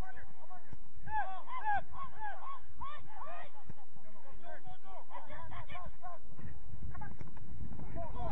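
Many short, arched honking calls in quick overlapping runs, thinning out briefly in the middle, over a low background of outdoor noise.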